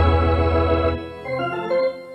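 Intro jingle of sustained electronic organ chords, with a deep bass note under the first second.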